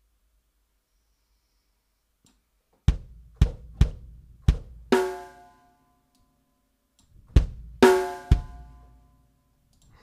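Sampled acoustic drum kit in the Engine 2 sampler, auditioned with single hits starting about three seconds in: four separate drum hits, then a crash that rings on for about half a second. A second group of three hits near the end includes another ringing crash.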